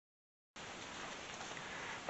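Dead silence for about half a second, then a faint, steady hiss of outdoor background noise with no distinct events.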